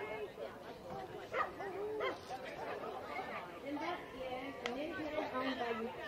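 A dog barking a few times over people talking in the background.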